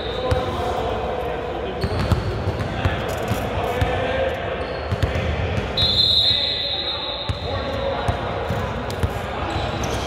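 Basketball bouncing on a hardwood gym floor during a free throw, with indistinct voices echoing around a large gym. A brief high-pitched squeal comes about six seconds in.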